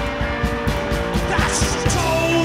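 Rock music soundtrack: drums hitting steadily under electric guitar.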